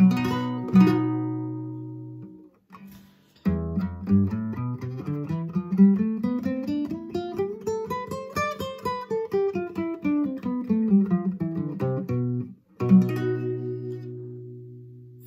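Classical guitar: a low note rings, then a fast picado scale in E major climbs for about five seconds and runs back down, ending on a ringing low B.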